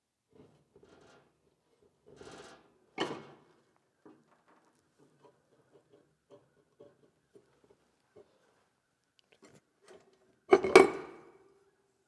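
A heavy metal turntable platter being handled on its turntable: a scrape and a sharp knock, then scattered light ticks. Near the end comes a loud double metallic clank with a brief ringing tone.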